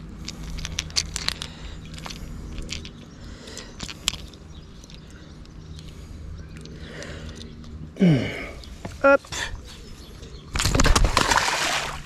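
Small clicks and rustles of a hard jerkbait's treble hooks and tangled weed being handled while unhooking a pike, then a loud rush of splashing water lasting over a second near the end as the pike is released into the river.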